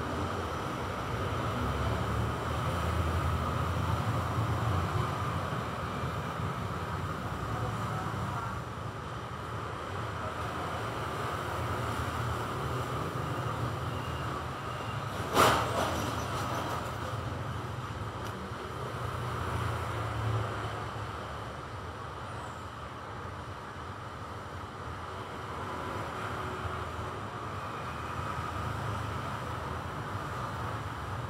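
Steady low background rumble with a fainter hiss, swelling and easing slowly, and one sharp click about halfway through.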